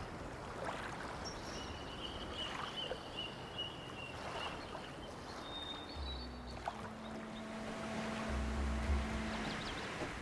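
Steady rushing ambient noise of a soundtrack bed, with a faint high sustained tone early on and low, sustained music notes with deep bass swells coming in about six seconds in.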